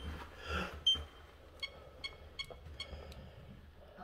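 A run of about six small, bright metallic clinks over a second and a half, the keys left hanging in the door's lever-handle lock swinging and tapping against the metal hardware as the door opens.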